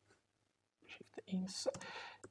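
Near silence for about a second, then a man's voice muttering softly, half whispered, with a couple of faint clicks.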